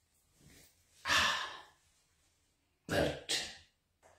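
A man breathing close to the microphone: one longer breath about a second in, then two short breaths in quick succession near the end.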